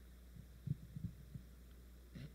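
Handling noise from a handheld microphone: a few soft, low thumps in quick succession, over a steady low electrical hum from the sound system.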